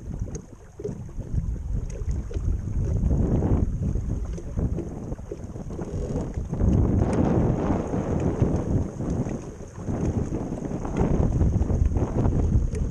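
Wind buffeting the microphone with water rushing along the hull of a small sailing skiff running downwind, swelling louder in gusts several times.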